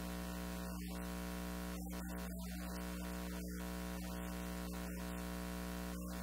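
A steady electrical hum with a stack of even overtones, unchanging in level, filling the recording.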